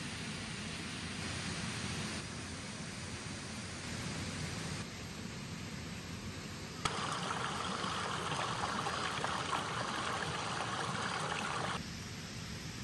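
Breaded chicken pieces sizzling on a wire mesh grill over charcoal, a steady crackling hiss. About seven seconds in it turns louder and brighter after a click, then drops back just before the end.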